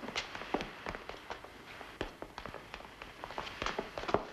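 Footsteps on a plank floor and sharp knocks as a wooden bench is taken hold of and lifted away, an irregular scatter of taps.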